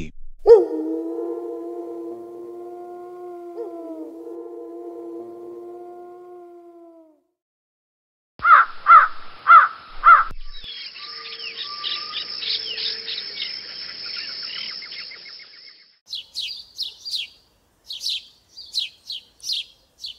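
Wild birds calling: four loud harsh calls about half a second apart, then a chorus of high chirping birdsong with separate chirps near the end. The calls follow a long, steady pitched tone with several overtones that slowly fades out over about six seconds.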